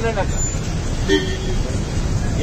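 A vehicle horn sounds once, briefly, a little over a second in, over the steady low rumble of street traffic.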